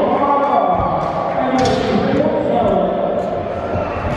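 Unintelligible voices echoing in a large hall, with thuds of scooter wheels hitting wooden ramps, one about a second and a half in and one at the end.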